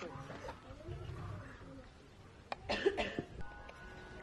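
A young lion sneezing once, a short sharp burst nearly three seconds in; gentle background music with long held notes starts just after.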